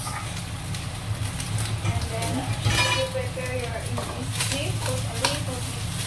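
Cooked rice sizzling in hot oil in a wok, with a spatula scraping and knocking against the pan as it is stirred. A steady low hum runs underneath.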